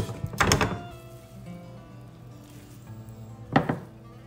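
Background music with steady tones, broken by two short wooden thunks: one about half a second in and one near the end, as kitchen tools knock against a wooden board.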